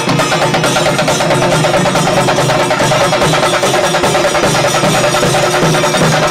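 Kerala chenda melam: chenda drums beaten with sticks in a loud, fast, dense rhythm of rapid strokes that runs on without a break.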